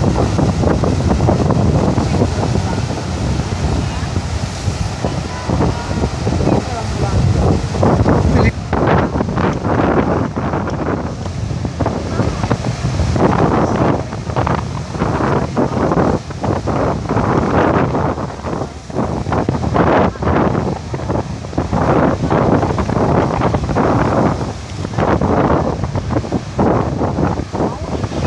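Wind buffeting the microphone over rough surf breaking on the shore, with indistinct people's voices in the background.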